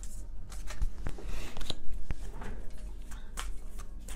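A tarot deck being handled and shuffled: papery rustling of cards with a few sharp light taps.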